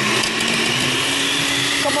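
Countertop blender running at speed, blending a whole lemon with water and olive oil: a steady whir whose motor tone rises slightly in the first second as it comes up to speed.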